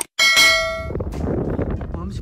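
A subscribe-button animation sound effect: a short click, then a bright notification-bell ding that rings for under a second and fades. Under and after it runs a low, steady outdoor rumble.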